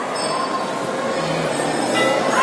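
Steady din of a crowd in a hard-walled temple hall, with faint ringing tones of a hanging brass temple bell drawn out over it.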